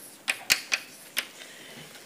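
Chalk tapping on a blackboard while writing: a few sharp taps, three in quick succession and one more a little over a second in.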